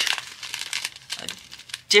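Crinkling of a clear plastic strip of sealed bags of diamond-painting drills being handled: a run of quick, irregular crackles.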